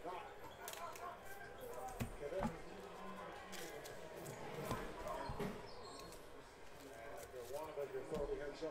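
A few soft knocks and thumps, the clearest about two seconds in and around five seconds in, over a faint voice murmur.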